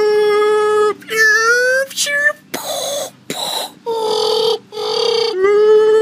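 A young man's voice giving a string of long, fairly high wordless yells, some held on one pitch, one rising, and a couple rough and hoarse, with short breaks between.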